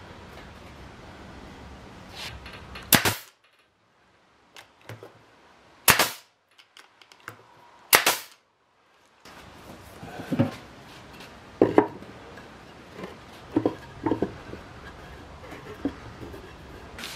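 Pneumatic nail gun firing three times, each a sharp loud shot, a few seconds apart, driving nails into fence-board wood. A few lighter knocks from the wood being handled follow in the second half.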